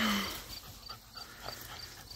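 Faint sounds of a dog, heard after a spoken word ends at the very start, with a soft, regular high ticking in the background about three times a second.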